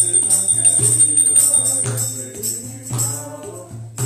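Devotional kirtan: voices singing over a barrel-shaped mridanga drum beating about twice a second and small hand cymbals ringing in time.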